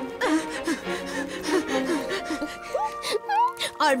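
Cartoon voices laughing and gasping for breath over background music. The music settles into a held chord about two seconds in, with a few quick high chirps a little after three seconds.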